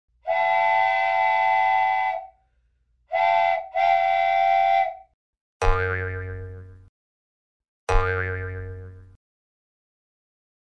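Edited-in cartoon sound effects: a steady whistle-like tone held for about two seconds, then two shorter toots, followed by two springy 'boing' effects that each ring and fade over about a second.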